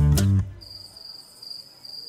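A recorded bachata song plays, then stops dead about half a second in. The break that follows holds only a thin, steady, high-pitched chirring tone, like crickets, which is part of the track's break.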